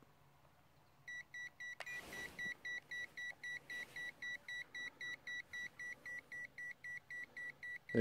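Digital clamp meter beeping rapidly, about four short, evenly spaced electronic beeps a second, starting about a second in. Its display reads OL: the current through the dead-shorted cable is over the meter's range. A single click comes near two seconds in.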